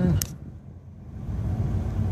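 Low, steady road and tyre rumble inside a moving Chevy Volt's cabin on the freeway. A sharp click comes just after the start, then the sound dips for about a second before swelling back.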